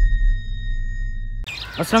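The tail of a logo sound effect: a deep bass rumble fading out under a thin, steady high tone. Both cut off suddenly about one and a half seconds in, giving way to birds chirping outdoors.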